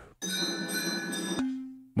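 Bell-and-mallet instrument samples previewed in the Arturia Pigments software synthesizer. A bright bell-like tone with ringing high overtones cuts off about a second and a half in, and a single lower tone takes over and fades away.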